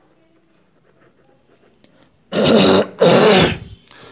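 A man clearing his throat: two loud harsh bursts back to back, starting a little over two seconds in.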